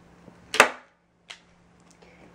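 A hand staple gun fires a staple through upholstery fabric into the wooden frame with one loud, sharp snap about half a second in, followed by a fainter click less than a second later.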